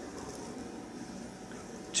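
Ballpoint pen drawing lines on paper: a faint, steady scratching over low room tone.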